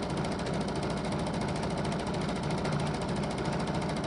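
Domestic sewing machine running steadily at a fast, even stitching rhythm during free-motion thread painting.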